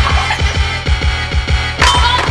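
Background music with a fast, steady beat.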